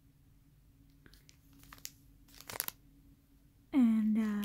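Clear plastic packaging crinkling as it is handled, in a few short crackles, the loudest about two and a half seconds in.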